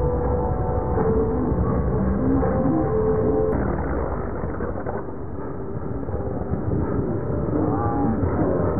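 Steady engine noise of a jet aircraft flying low overhead, with scattered voices of a crowd of spectators over it.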